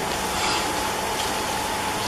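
Room tone in a pause between spoken sentences: a steady, even hiss with a faint hum and no distinct events.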